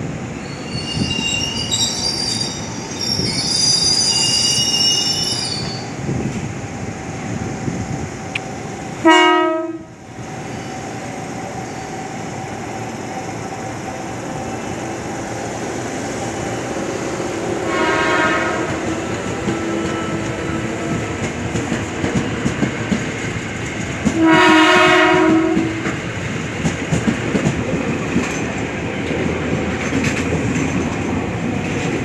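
Ex-Tokyo Metro 6000 series electric commuter trains running through a station, their wheels squealing high-pitched in the first few seconds over a steady rumble of wheels on track. Three short train horn blasts sound: the loudest about nine seconds in, a fainter one near the middle and a strong one about five seconds before the end.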